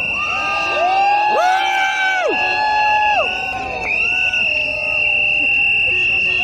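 Protest crowd cheering, with several overlapping long, high, held shouts. A steady high-pitched tone runs underneath.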